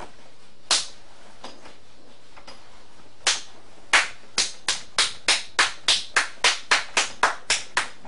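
Sharp claps: one early single clap, another about three seconds in, then a quick, even run of about three to four claps a second from about four seconds in until near the end.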